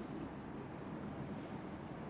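Marker pen writing on a whiteboard: faint short strokes of the tip on the board.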